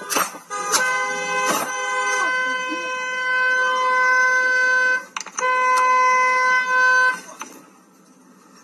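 A car horn held in one long blast of about four seconds, a brief break, then a second blast of under two seconds, with a couple of sharp knocks near the start.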